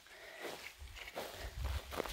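A hiker's footsteps on stony ground, with a low rumble building from about a second in.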